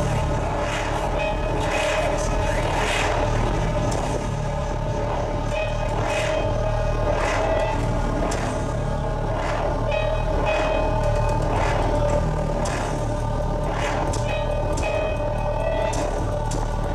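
Droning electronic music with steady held tones over a low hum, and soft hissing swells coming about once a second.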